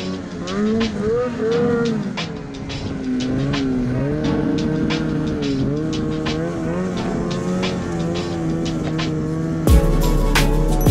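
Two-stroke snowmobile engine revving up and down as the sled rides over snow, mixed with background music that has a steady beat; the music's bass thumps in near the end.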